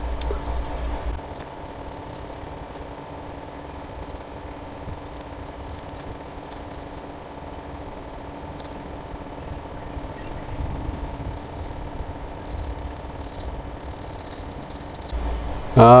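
Steady low electrical or motor hum, unchanging throughout.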